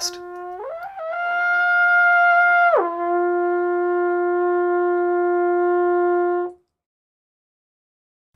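A brass instrument plays a sustained note, rises an octave about half a second in and holds the higher note, then drops back down an octave near three seconds and holds the lower note until it stops abruptly.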